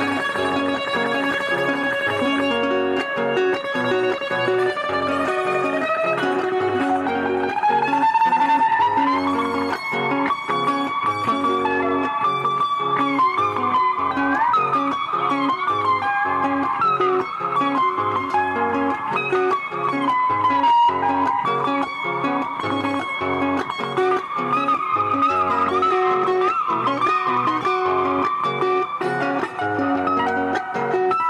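Guitar played slide-style with an empty glass bottle pressed on the strings: the melody glides up in pitch and wavers between notes over a steady pattern of plucked lower notes.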